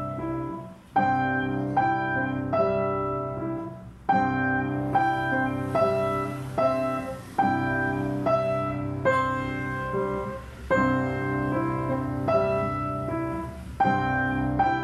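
Piano duet, four hands on one acoustic piano, playing a tune at a steady pulse over a held bass line, with short breaks between phrases about one second and four seconds in.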